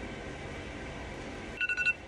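Low room noise, then near the end a brief run of quick electronic beeps, two pitches sounding together, of the kind a phone makes.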